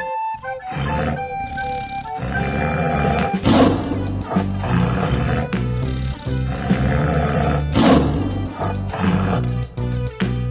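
Tiger roaring repeatedly, with the loudest roars about a second in, midway and near the end, over steady background music.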